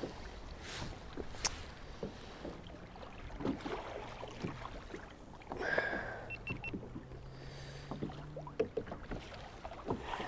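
Small waves lapping against a fishing kayak's hull, with scattered light knocks and rustles. A faint low hum runs for about two seconds after the middle.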